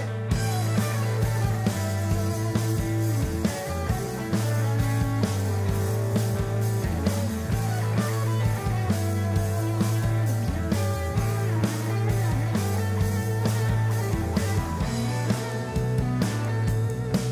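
A live rock band playing an instrumental passage on electric guitars and a drum kit, the drums coming in at the very start.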